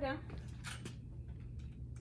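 A plastic IV fluid bag and its tubing rustling in a couple of short crinkles near the middle as the bag is turned upside down and lifted toward the IV pole hook, over a steady low hum.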